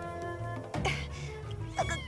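Orchestral cartoon score with held notes, over which a leopard cub gives short cries: one about a second in and another, quickly rising and falling in pitch, near the end.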